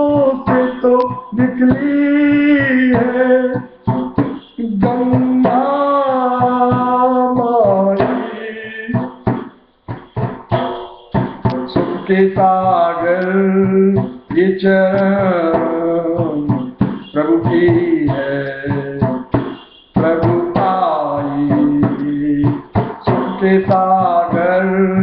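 Devotional Hindi bhajan music: a melody sung with instrumental accompaniment, pausing briefly a few times.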